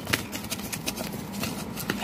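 Paper-wrapped rolls of nickels being rummaged and pulled out of a cardboard box: a run of light clicks and rustles, with a sharper click near the end.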